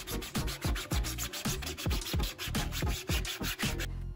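Sanding block rubbed back and forth over the ridged surface of a 3D-printed PLA plant pot, smoothing its edges and excess hot glue, in quick repeated scrapes. Background music with a steady thumping beat plays underneath.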